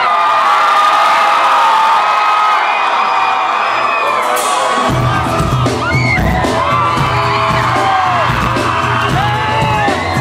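A concert crowd singing along loudly, many voices together. About five seconds in, the rock band's bass and drums come in beneath the singing.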